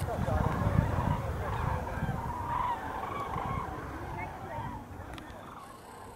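A flock of common cranes calling in flight overhead: many overlapping calls, growing gradually fainter as the birds pass.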